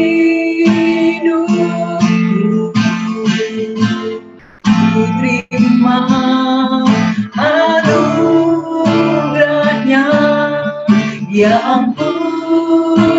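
Two women singing a song to a strummed acoustic guitar, with a short break in the sound about four and a half seconds in.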